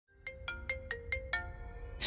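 Phone ringtone: a quick melody of six bright plucked notes in just over a second, each ringing on briefly.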